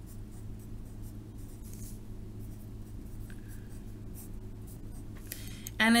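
Pencil writing on lined notebook paper: a run of short scratching strokes, with a steady low hum underneath.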